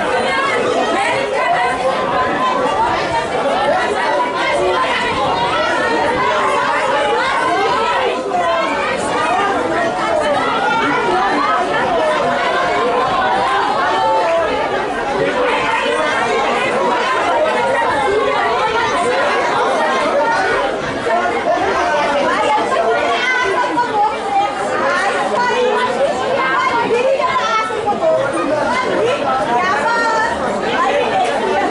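Many voices talking at once, a steady babble of spectators' chatter in which no single voice stands out.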